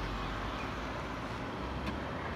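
Steady outdoor background noise, a low hum under an even hiss, with a faint click near the end.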